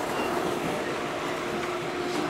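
Subway train running on elevated track, heard from aboard: a steady rumble and rattle of wheels on rail. A faint steady whine comes in about a second in.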